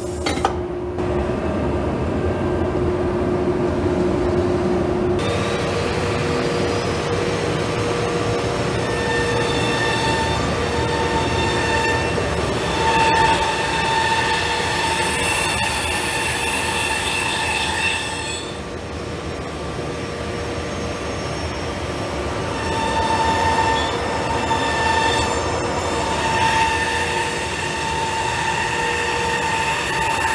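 CNC nesting router running: steady machine noise with a high whine that comes in and out, as its gantry and vacuum lifter carry a sheet of board onto the bed.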